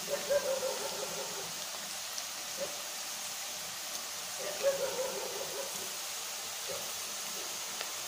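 Cashew pakoda frying in a pan of hot oil: a steady sizzle. More clumps of batter are dropped into the oil about halfway through.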